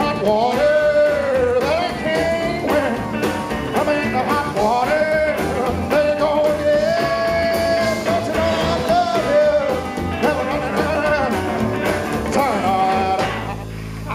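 Live rockabilly band playing an instrumental break: a lead line of bending, sustained notes over upright double bass, drums and strummed acoustic guitar, with a steady beat.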